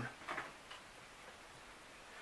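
Faint ticks over quiet room tone, with a brief soft trace of voice near the start.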